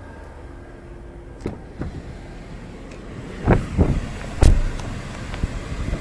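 Someone getting into the driver's seat of a 2017 Toyota Camry: a low steady rumble, then a few knocks and rustles and one loud thud about four and a half seconds in.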